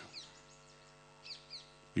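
Faint, steady mains hum with three short, high bird chirps that fall in pitch: one just after the start and two close together a little past the middle.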